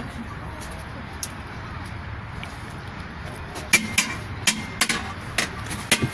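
Maraş ice cream (dondurma) vendor's long metal paddle knocking and clanking against the metal ice cream tubs and lids as part of the show. There is a quick run of sharp metallic strikes, some briefly ringing, starting a little over halfway in, over a steady background hum.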